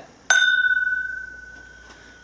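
Two glasses of whisky clinked together in a toast: a single clink that rings on with a clear tone, fading away over about a second and a half.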